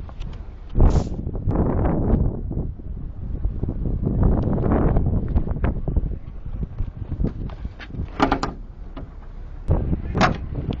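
A door bangs shut about a second in, the loudest sound here, followed by wind buffeting the microphone. A few sharp clicks and knocks come near the end.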